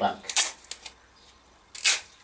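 A man's voice speaking at the start and again just before the end, with a quiet pause between that holds only a brief soft hiss.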